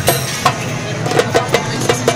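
Steam hissing from a hot cooking pot, with a run of quick sharp clacks and clinks.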